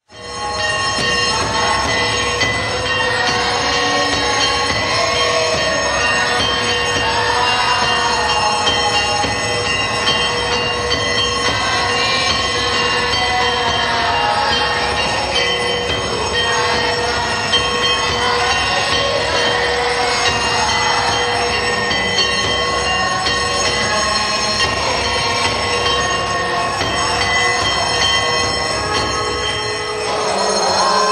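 Many temple bells ringing together without pause: a loud, dense metallic ringing with several steady ringing tones held over a clangorous wash, starting suddenly.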